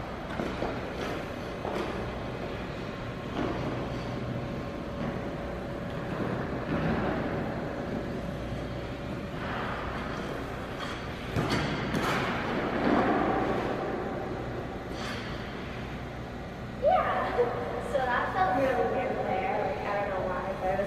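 Figure skate blades scraping and carving on rink ice during a single flip jump attempt, with sharp scrapes around the middle, over a steady background hum. From about 17 s a voice comes in.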